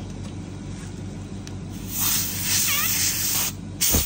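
A hiss of air comes in about two seconds in, over a steady low hum, and ends in a sharp click just before the end.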